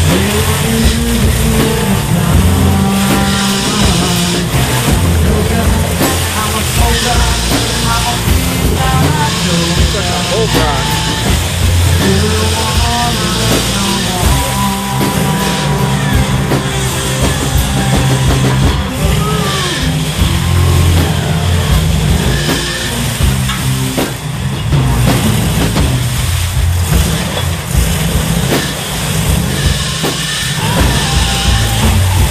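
Late-1970s Ford pickup's engine revving hard under load as its tyres spin on wet rock and mud, with music with vocals playing throughout.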